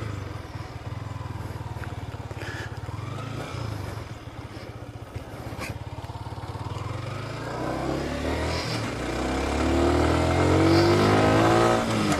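Motorcycle engine idling steadily, then pulling away and accelerating. Its pitch and loudness climb, with a brief dip at a gear change about nine seconds in.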